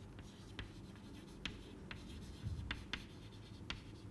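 Chalk writing on a chalkboard: faint, irregular taps and scratches of the chalk as a word is written.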